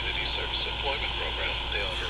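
C. Crane CC Pocket radio's small built-in speaker playing an AM station on 740 kHz: a faint voice under steady static with a low hum. The noisy reception comes from interference inside a steel building full of electronics.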